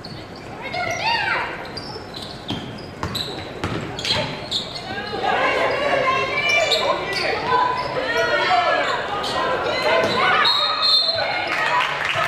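Basketball bouncing on a hardwood gym floor during play, with repeated sharp thuds, amid players' and spectators' voices echoing in a large gym; the voices grow louder about halfway through.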